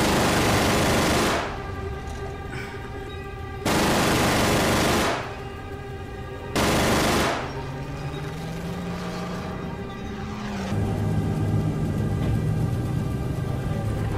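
Film soundtrack of an aerial dogfight: three bursts of aircraft machine-gun fire, each a second or so long, over a steady engine drone and music. The drone rises in pitch from about eight to ten seconds in, then holds low and steady.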